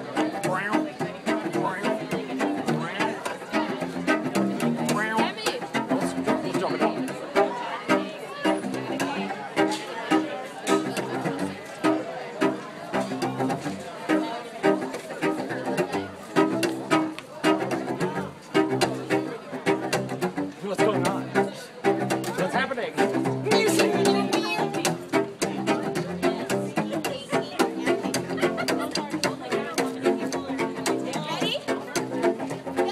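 Cello played standing with the bow in a fast, driving rhythmic figure of short, sharply attacked strokes, repeating the same low notes.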